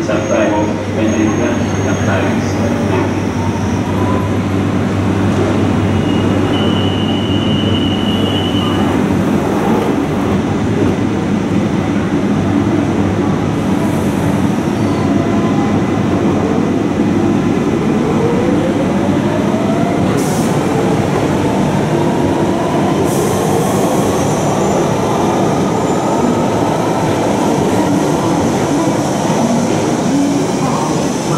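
London Underground train on the far platform pulling away, with a steady low rumble. Its motors give a whine that climbs steadily in pitch through the second half as it picks up speed.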